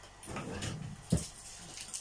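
Kitchen handling noises while cooking: a rustle, then a single sharp knock a little over a second in.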